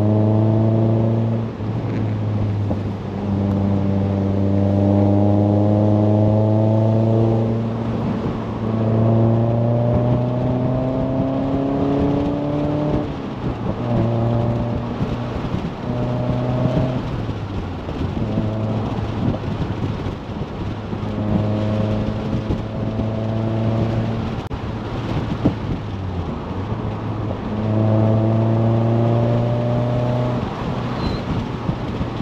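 Tuned Mazda MX-5 NC roadster's engine accelerating repeatedly, about seven times. Each pull rises steadily in pitch over a few seconds, then drops away briefly as the throttle lifts, over steady road and wind noise.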